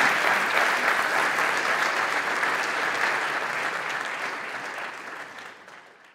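Audience applause, a dense steady clapping that fades out over the last two seconds.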